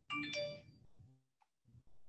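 A short bright ringing tone made of several pitches, starting sharply and dying away within about a second.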